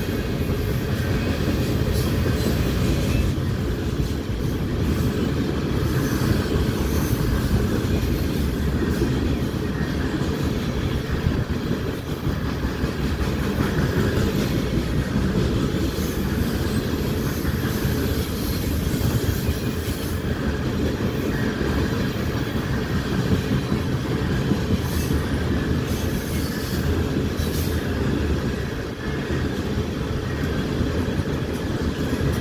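Freight cars, tank cars and then covered hoppers, rolling steadily past on steel wheels: a continuous rumble of wheels on rail, with occasional sharp clanks near the end.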